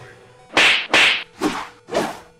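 Video-game-style punch sound effects dubbed over boxing footage: four quick swooshing hits, about half a second apart.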